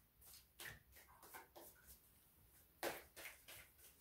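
Faint rustling and soft clicks of a tarot deck being shuffled by hand, with one louder snap of the cards about three seconds in.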